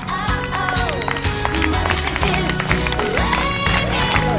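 Background music with a steady bass beat and a gliding melody line.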